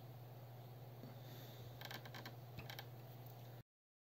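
Very faint steady low hum with a short cluster of light clicks and scuffs around the middle, then the sound cuts off suddenly just before the end.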